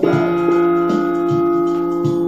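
Electric guitar chord struck once and left to ring, its notes sustaining steadily with a few lower notes changing underneath.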